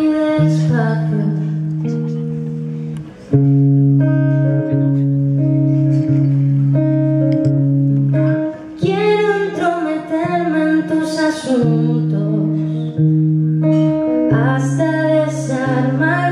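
A woman singing live with her own acoustic guitar: steady, repeated guitar chords, with a short drop in level about three seconds in, and her voice coming in for phrases around the middle and again near the end.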